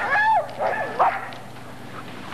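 A dog whining: two short, high calls in the first second, each rising and then falling in pitch.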